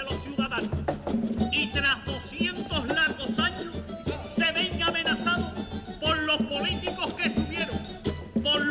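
Live Cádiz carnival coro music: a chorus singing together with its plucked-string band, over a steady beat of about two pulses a second.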